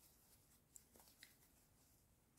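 Near silence, with a few faint soft clicks from a metal crochet hook working wool yarn, a little under a second in.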